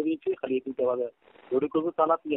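Speech only: a person talking over a telephone line, with the thin, narrow sound of a phone call.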